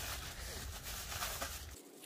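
Faint crinkling of aluminium foil as it is pressed and folded around a head, over a low rumble that stops near the end.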